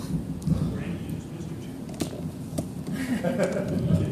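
Indistinct talk from people in a meeting room, not clear enough to make out words, with a sharp click about halfway through.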